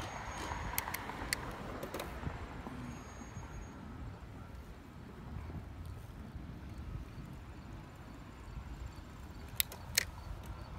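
Steady low rumble of wind and tyre noise from riding a bicycle along a sidewalk, with a few sharp clicks or rattles from the bike in the first two seconds and again near the end.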